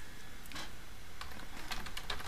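Typing on a computer keyboard: a run of quick key clicks that starts about half a second in and comes faster towards the end.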